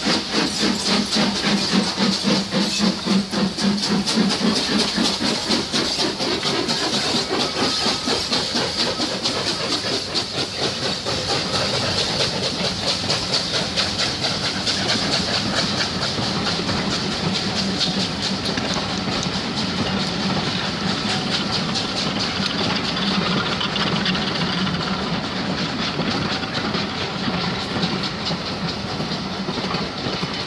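Two steam locomotives double-heading a passenger train pass close by, their exhaust beats in quick, loud pulses for the first several seconds. Then the coaches roll past, their wheels clicking steadily over the rail joints.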